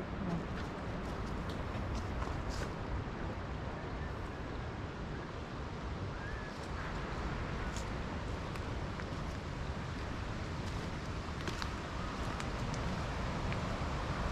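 Steady rushing wash of Lake Michigan waves heard from the wooded bluff, with a few faint footsteps on the dirt trail.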